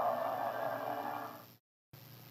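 A steady sustained sound from the end of a TV promo fades out over about a second and a half. It then cuts to a brief moment of dead silence at the splice into the next commercial.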